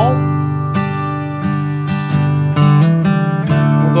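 Steel-string acoustic guitar strummed with slow downstrokes on a G major chord, then a short three-note fill near the end, open fourth string, hammer-on at the second fret, open third string, leading into a D chord.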